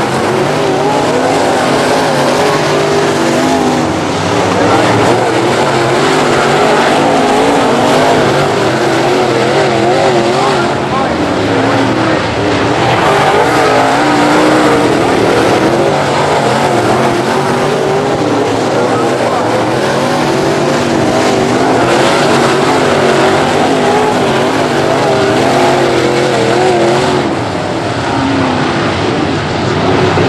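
A field of dirt late model race cars running laps, several V8 engines at high revs at once. Their pitches rise and fall as the cars accelerate down the straights and lift for the turns.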